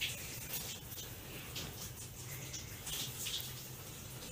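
Quiet indoor room tone with a steady low hum and a few faint soft taps and rustles.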